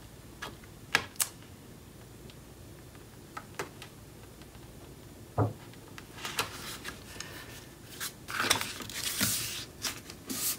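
Paper and chipboard being handled and pressed into place on a work table: a few sharp taps about a second in and a duller knock about halfway, then paper rustling and rubbing in the second half.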